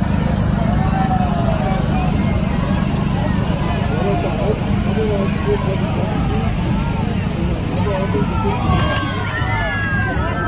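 Diesel engine of a Kubota compact tractor running at low speed close by, a steady low rumble, with spectators' voices calling out over it, more of them near the end.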